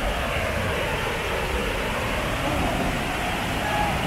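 Steady rushing of a waterfall, an even noise with no rhythm, with faint voices near the end.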